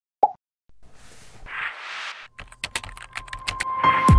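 A single short pop, then a soft hissy swell, then a run of sharp clicks that come faster and faster toward the end.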